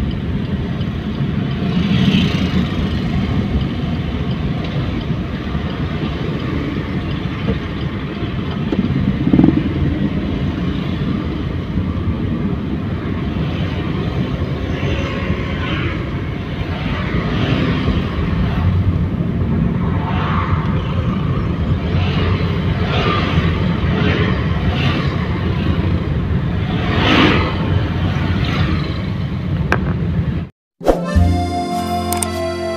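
Car driving in town traffic, heard from inside the cabin: a steady low rumble of engine and road noise, with motorcycles in the traffic around it. The sound swells briefly a few times, most clearly about nine seconds in and near the end.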